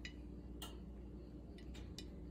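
A few light clicks, about four faint ticks spread over two seconds, as dough balls are set by hand into a ceramic baking dish, over a low steady hum.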